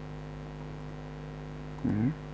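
Steady electrical mains hum with its harmonics, a buzz on the recording line. Near the end comes a brief, louder voice-like sound.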